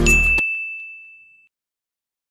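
A single high chime sound effect rings out and fades away over about a second and a half. Electronic background music under it cuts off abruptly just under half a second in.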